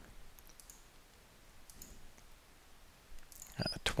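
Faint clicks of a computer mouse, a few scattered ones and then a quicker, louder cluster near the end.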